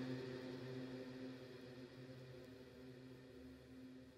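A faint, steady low note with its overtones, held and slowly fading away.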